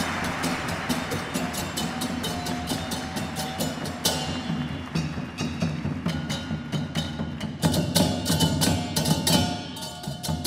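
Gamelan percussion: hand drums and small bronze gongs struck in a quick, even stream of strokes, the gongs ringing on pitch between hits. About four seconds in, the strokes turn sharper and brighter.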